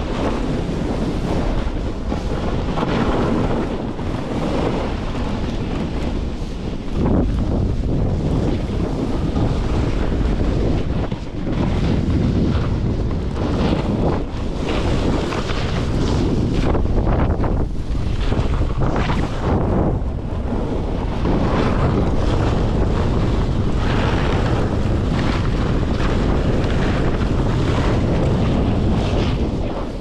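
Strong wind buffeting the microphone in a loud, steady rush with irregular surges, from moving fast downhill on skis through snow.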